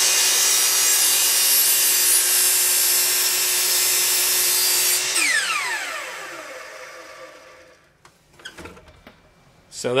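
Hitachi compound miter saw running at full speed as its blade comes down through a small wood block at a 45-degree angle. About five seconds in the trigger is released and the motor winds down with a falling whine that fades out over the next two to three seconds.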